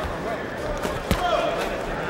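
Boxing arena crowd noise with scattered voices and shouts, and two sharp thuds of gloved punches landing, about half a second and about a second in, the second the louder.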